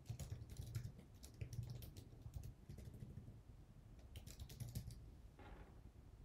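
Faint typing on a computer keyboard: scattered key clicks, with a quick run of keystrokes a little past four seconds in.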